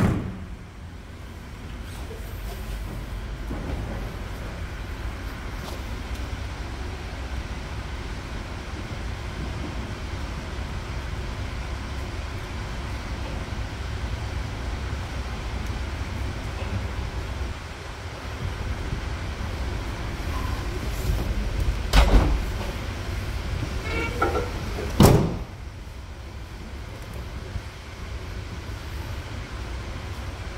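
Two bangs about three seconds apart as the pickup's tailgate and canopy rear hatch are shut, over a steady low rumble.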